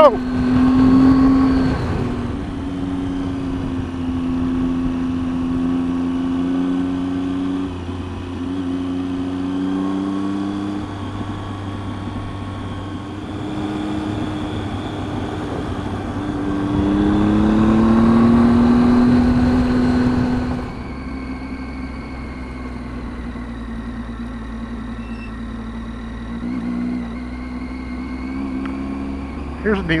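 Triumph Tiger 800 XCx's three-cylinder engine running under way on a dirt road, its pitch shifting with the throttle. It rises as the bike speeds up about two-thirds of the way through, with a rushing noise growing over it, then drops back when the throttle is eased.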